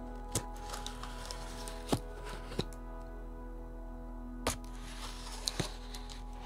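Clear packing tape and plastic wrap being peeled and handled on a cardboard box close to the microphone: scattered crackling with a few sharp clicks, the loudest about two seconds in. Soft background music plays steadily underneath.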